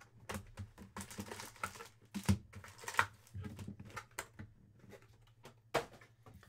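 Cardboard hobby box of trading cards being opened by hand and its foil-wrapped card packs taken out and set down on a table mat: irregular clicks, taps and short rustles, with sharper taps about two seconds in, at three seconds, and just before the end.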